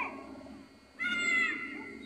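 A child's short, high-pitched call about a second in, held briefly and dropping slightly at the end.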